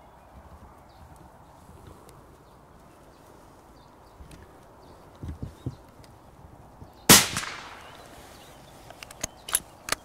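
A single rifle shot about seven seconds in, one loud crack with a long echoing tail: a scoped hunting rifle fired at a roe buck, a high neck shot that drops it on the spot. A few short sharp clicks follow near the end.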